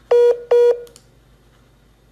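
Two short electronic beeps from a phone on a call, each about a quarter second long at one steady pitch, half a second apart.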